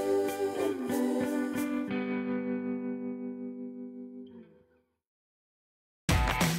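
Background instrumental music. About two seconds in the beat stops and the track ends on a held chord that fades out, leaving silence for the last second or so.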